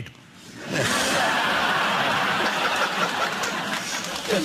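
A large studio audience laughing, starting less than a second in after a brief lull and carrying on steadily as a dense crowd roar.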